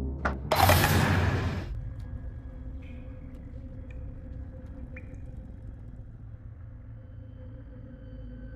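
Horror film soundtrack: a loud rushing noise about half a second in, lasting about a second, then a low steady drone with a few faint ticks.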